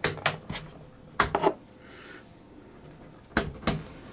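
Rotary input selector switch of a NAD 3130 amplifier clicking through its detents as the knob is turned, in three short runs of two or three sharp clicks. The knob now grips its spindle again, the closed-up split in the splined spindle having been opened back up.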